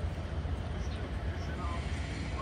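Outdoor ambience: a steady low rumble with faint, indistinct voices of people in the distance.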